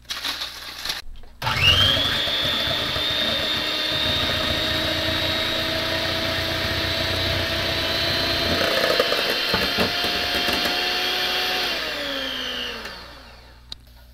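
Electric hand mixer whisking egg whites to a froth in a stainless steel bowl, the first stage of a meringue. After a few short knocks, the motor whine starts about a second and a half in, runs steadily for about ten seconds, then falls in pitch and dies away as it is switched off.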